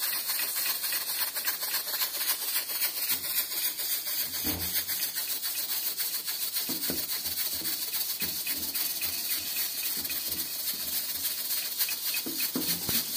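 Steady hissing with a fine crackle from a pressure cooker building steam under its weight on a gas stove, with a pot of milk at a foaming boil beside it. A few soft knocks come after the middle.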